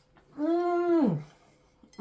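A person's single drawn-out "mmm", held on one pitch for about half a second, then sliding down as it ends.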